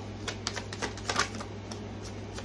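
Tarot cards being handled and shuffled, a quick irregular run of light clicks and flicks, over a steady low hum.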